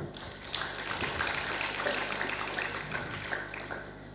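Audience applauding, a dense patter of clapping that dies away near the end.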